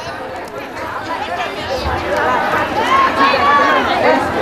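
People's voices talking over background chatter, growing louder in the second half.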